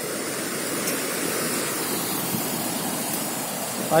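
The swollen Ciliwung River in flood, its fast, muddy water rushing past in a steady, even noise.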